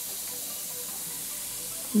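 Steady fizzing hiss of a LOL Surprise Bubbly Surprise effervescent ball dissolving in a bowl of water.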